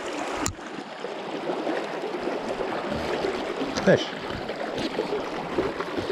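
Steady rush of a fast, shallow river flowing past the wader, with a single sharp click about half a second in.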